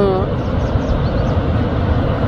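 Steady rushing roar of Niagara's American Falls and the churning river below, with a heavy low rumble. The end of a spoken word is heard right at the start.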